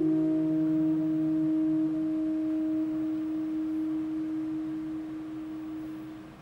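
Saxophone quartet holding a long chord. The lower notes drop out about two and three seconds in, leaving one held note that fades away near the end.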